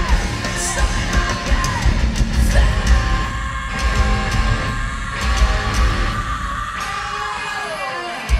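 Hard rock band playing live, heard from within the arena crowd: heavy drums and bass under a long held, yelled vocal note that slides down in pitch near the end.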